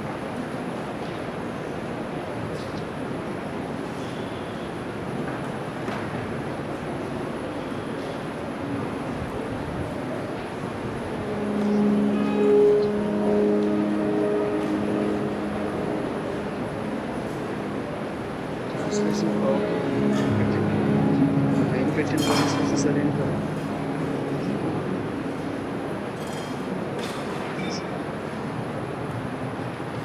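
Steady room noise, then a keyboard instrument playing held chords about twelve seconds in and again around twenty seconds in, with a single knock near twenty-two seconds.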